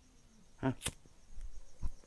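A short soft sound, then a single sharp click just under a second in, followed by faint low rustling.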